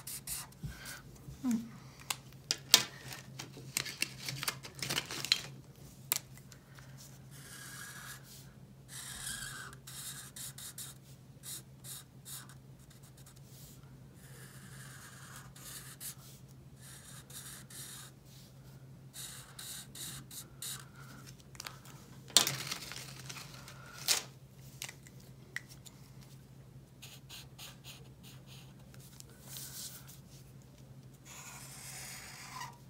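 Black Sharpie permanent marker drawing on paper as a heart outline is traced: irregular short scratchy strokes of the felt tip across the sheet, with a few sharper taps and paper sounds, over a steady low hum.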